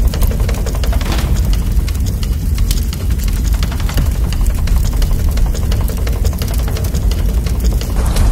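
Fire crackling with many irregular sharp pops over a heavy, steady low rumble.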